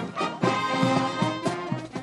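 A marching wind band of saxophones and brass playing a tune, a fire brigade brass band with held chords changing every few beats.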